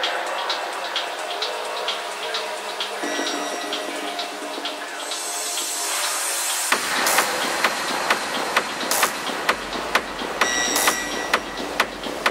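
Dark techno track at a breakdown. For the first seven seconds the bass is filtered out under ticking hi-hats, with a rising noise sweep building up. Then the kick drum drops back in at about two beats a second, and a deep bass line joins a few seconds later.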